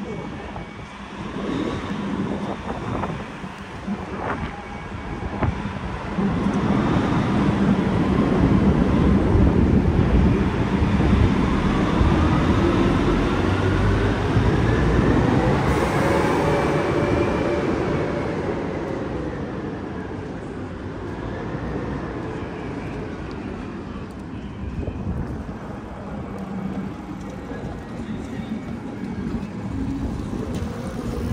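Street traffic echoing through a stone passage, with one vehicle's engine or motor note rising slowly in pitch for about ten seconds and then falling away as it passes, over a steady rumble.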